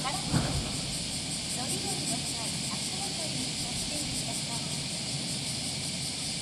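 Platform sound beside a stopped JR West 225 series electric train: a steady high hiss throughout, with voices in the first half and a brief thump about half a second in.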